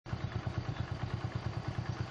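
A small engine idling, a steady low putter of about eight beats a second.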